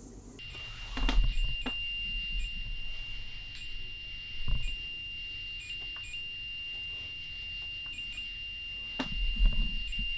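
Steady high-pitched electronic tone from a device, starting about half a second in and holding on with brief regular dips, with a few soft knocks and handling sounds.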